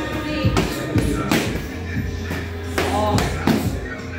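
Background music playing in a gym, with boxing gloves hitting focus mitts: several sharp smacks at irregular intervals through the music.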